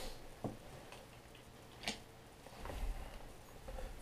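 A few faint, sharp clicks spaced out over quiet room tone, with a soft low rumble about three seconds in.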